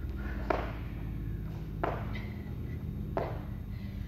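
Feet landing on a rubber-matted gym floor during squat jumps: three thuds about a second and a half apart.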